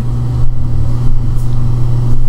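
A loud, steady low hum with no other sound over it.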